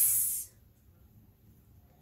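A woman voicing the letter sound of X, a short whispered 'ks' hiss lasting about half a second at the very start, followed by quiet room tone.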